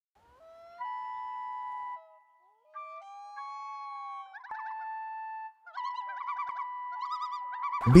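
Common loon calling: two long wails that swoop up and hold, then wavering tremolo calls from about halfway in.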